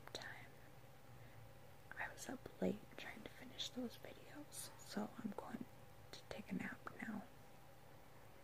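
A woman whispering a few short phrases, faint and close to the microphone.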